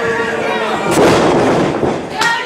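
A single loud, sharp smack about a second in, from a wrestling blow or a body hitting the ring, over shouting from the crowd.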